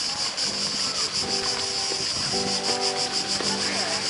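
Insects buzzing in a high, fast-pulsing drone that goes on steadily. From about half a second in, music of held, stepwise-changing chords sounds over it.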